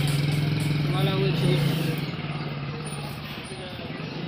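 A steady low engine hum, like a motor vehicle idling close by, that fades away over the second half. A faint voice comes in briefly about a second in.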